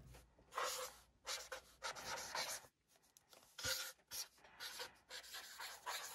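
Felt-tip marker drawn across notebook paper in about ten short, faint strokes with brief gaps between them, as large letters are written by hand.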